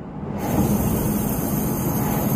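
Steady road and engine noise inside a moving car's cabin: a low rumble with a faint hum. It swells over the first half second, then holds level.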